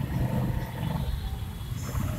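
Low engine rumble of slow-moving traffic heard from inside a car, louder during the first second.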